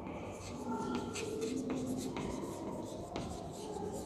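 Chalk writing on a chalkboard: a run of short scratches and taps as a line of words is written, fainter than the teacher's voice around it.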